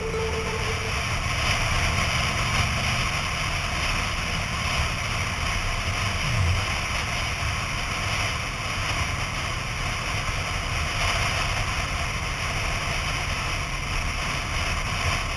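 Wind rushing over a helmet-mounted camera on a moving sport motorcycle, with the engine's low drone beneath it. About halfway through, the engine note briefly falls in pitch.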